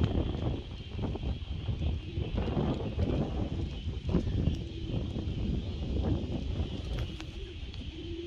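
Wind buffeting the microphone in gusts, with domestic pigeons cooing faintly.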